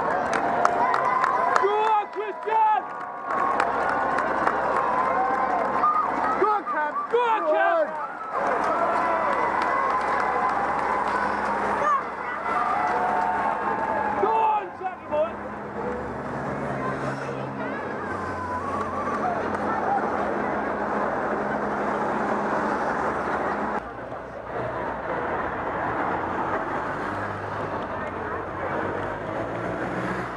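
Roadside crowd chatter, a general babble with nearby voices over it. About halfway through, escort motorcycles pass along the course with their engines running under the crowd noise.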